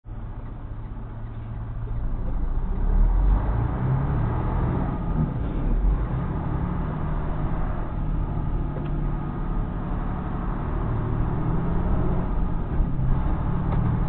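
Semi truck's diesel engine heard from inside the cab, rumbling low at a stop and then revving up as the truck pulls away from the light about two seconds in. It then runs on steadily at low road speed.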